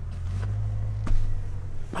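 A door being opened to go outside: a small latch click, then a sharp knock about a second in, over a steady low rumble.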